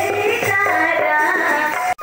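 A woman singing a melody into a handheld microphone over music accompaniment. The sound cuts off abruptly near the end.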